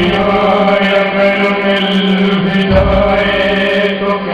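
Live stage accompaniment to a Hindi film song: sustained, chant-like chords held over a steady drone. A deeper bass layer comes in near the end.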